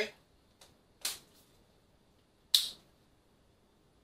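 Two sharp clicks of a spice jar as cinnamon is added to a saucepan of oatmeal, about one second and two and a half seconds in, the second the louder, with a fainter tick before the first.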